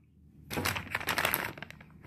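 Plastic soft-bait packet crinkling and crackling as it is handled, a quick run of crackles starting about half a second in and fading before the end.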